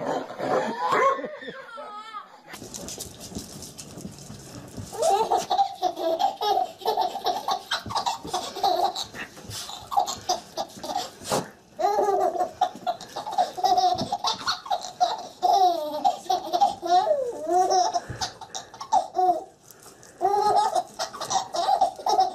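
Baby laughing hard, belly laughs in quick repeated bursts from about five seconds in, with a couple of short pauses for breath.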